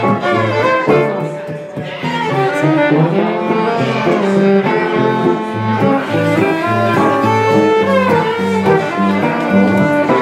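Live gypsy jazz trio playing a minor-key tune: a violin bowing the melody over two acoustic archtop guitars strumming the accompaniment.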